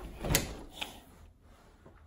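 A closet door being handled, with a sharp knock about a third of a second in and a lighter knock just under a second in.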